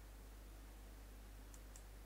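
Near silence: a steady faint hum of room tone, with two faint computer mouse clicks about one and a half seconds in.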